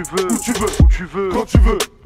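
French rap: a male voice rapping over a hip-hop beat with deep, falling bass kicks and ticking hi-hats. The track breaks off briefly near the end.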